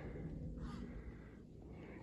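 Quiet pause with a faint low rumble and a soft, breath-like sound about half a second in.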